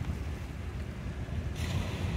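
Wind buffeting the microphone in an irregular low rumble, over the faint hiss of waves washing onto a pebble beach, the hiss swelling a little near the end.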